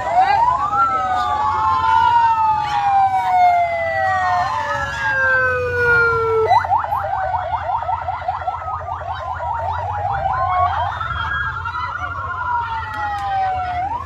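Emergency vehicle sirens from an approaching ambulance, two or more overlapping. They sound first as slow wails sliding down in pitch, switch about six and a half seconds in to a fast yelp, and go to a rapid warble near the eleven-second mark before a slow wail returns.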